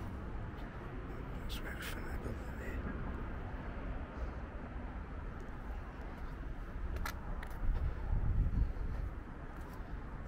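Outdoor rooftop ambience: a steady low rumble of distant town traffic and wind on the microphone. The rumble swells louder for a second or two near the end. A few brief sharp high sounds come about two seconds in and again around seven seconds in.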